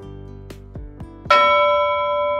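Soft background guitar music, then a single bright bell chime struck about two-thirds of the way in, ringing on and slowly fading.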